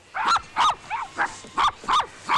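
Small dogs barking in quick, high-pitched yaps, about three a second. The barks are at a stranger they don't know, out of fright.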